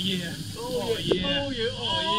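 Indistinct voices of people talking, with no clear words, over a steady hiss. A single sharp click comes about a second in.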